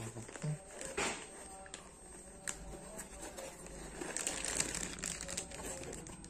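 A foam packing sheet and a plastic bag rustling and crinkling as they are handled and pulled apart. The crinkling thickens from about four seconds in.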